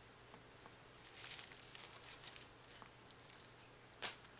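Tissue paper faintly rustling and crinkling as a cat plays in it, in short bursts of crackles from about a second in, loudest just after that and dying away near three seconds.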